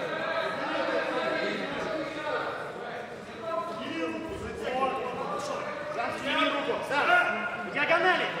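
Several voices talking and calling out over one another in a large, echoing sports hall, with a few short sharp knocks in the second half.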